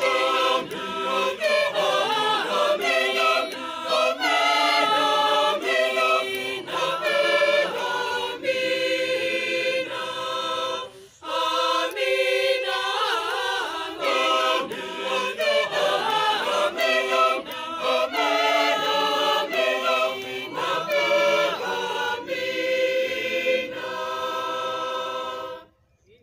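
Choir of women's and men's voices singing unaccompanied in harmony, with a short break about eleven seconds in, stopping abruptly shortly before the end.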